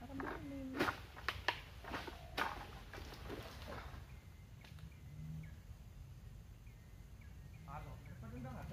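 A few sharp knocks and cracks in the first couple of seconds, then faint short bird chirps repeating, over a low steady rumble.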